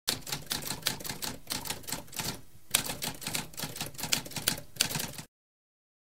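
Typewriter typing: a rapid run of keystroke clicks with a brief pause about two and a half seconds in. It stops abruptly a little after five seconds.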